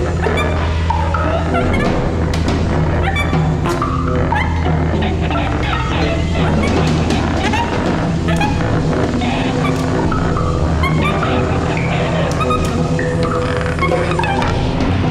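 Free-improvised electroacoustic ensemble music: a steady low drone under a dense layer of short gliding electronic and instrumental sounds, with scattered clicks.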